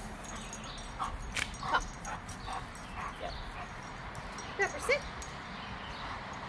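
Bluetick coonhound giving a string of short, high whining cries, with two louder ones near the end.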